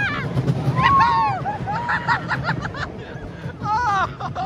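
Roller coaster riders screaming, whooping and laughing, several voices overlapping, over the low steady rumble of the steel coaster train running along its track.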